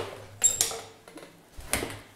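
A metal door being pushed open: a click as it starts, a short metallic rattle with a faint ring about half a second in, and another knock near the end as the door swings through.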